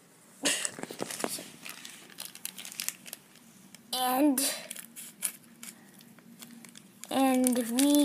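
Crinkly yellow foil blind-bag wrapper being handled and opened by hand to get at a small plastic toy figure, giving irregular crackles, strongest near the start.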